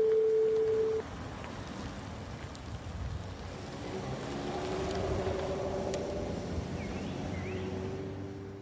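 A steady single-pitch telephone-line tone on the recorded 911 call, lasting about a second. Then a low, steady outdoor rumble like distant traffic, swelling a little in the middle.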